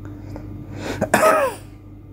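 A man clearing his throat: one short, rough cough-like burst about a second in.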